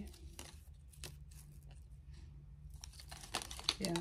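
Cardboard tag being torn and pulled off a small beaded Christmas wreath ornament, with scattered crinkling and rustling.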